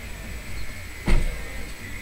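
Electric hair clippers buzzing steadily while cutting hair, with one sudden thump about a second in.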